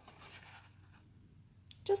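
Faint rustle of cardstock sliding against a 2-inch circle punch as the stamped greeting is positioned in it, fading out about half a second in.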